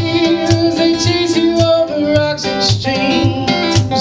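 Live acoustic guitar played with the fingers, held notes ringing over a steady low pulse of bass notes a little under three times a second.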